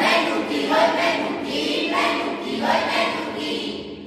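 A group of young voices singing together in unison, in short loud phrases about a second apart.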